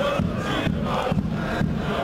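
Football supporters chanting together in unison, a loud rhythmic chant with about two beats a second.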